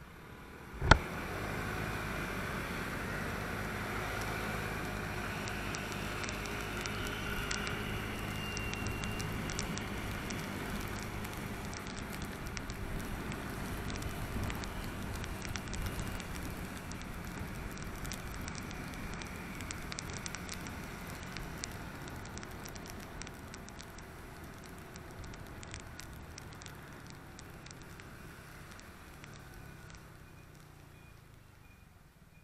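Motorbike riding on wet streets, heard through an action camera: a steady engine hum under road and wind noise, with a crackling patter of rain and spray. A single sharp knock sounds about a second in.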